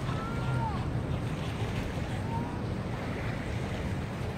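Wind on the microphone and small river waves washing onto a sandy shore, over a steady low hum. A thin whistled note is held in the first second and drops in pitch as it ends, and a shorter one comes about two seconds in.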